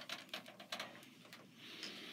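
Clear plastic zip-top bag being handled, with soft, scattered crinkling clicks.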